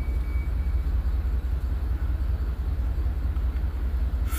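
A steady low rumble with no speech over it.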